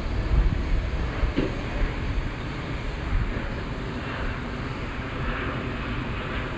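Wind buffeting the microphone: a steady, uneven low rumble of outdoor noise with no distinct machine tone.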